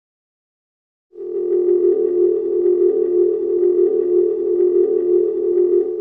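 A loud, steady electronic tone that starts about a second in and holds one pitch without a break, the opening drone of a logo intro sting.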